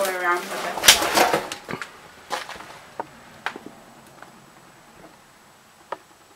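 A short stretch of voice at the start, then scattered light knocks and clicks, about one a second and fading, of someone stepping and bumping things in a cluttered room with a decaying floor. The sharpest knock comes near the end.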